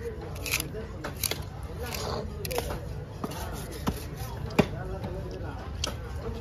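A large knife slicing yellowfin tuna steaks on a wooden chopping block, with a few sharp knocks as the blade meets the block, over people talking in the background.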